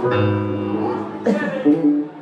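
A live band playing through a PA: held keyboard chords over a bass guitar line, the chord changing about halfway through.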